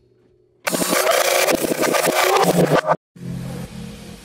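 Brief near silence, then about two seconds of loud, dense, very fast drumming with a bright cymbal wash that cuts off abruptly. Electronic music with a pulsing bass starts right after.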